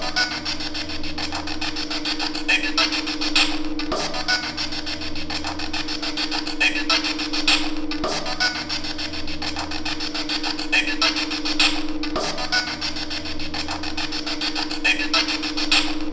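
Spirit box sweeping through radio stations: static and chopped fragments over a steady hum, the same four-second stretch repeated four times.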